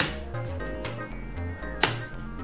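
Background music: a bass line with a sharp drum hit at the start and another near the end.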